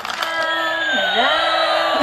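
Battery-operated bump-and-go toy airplane's electronic sound effect: steady synthetic tones with a long, slowly falling whine.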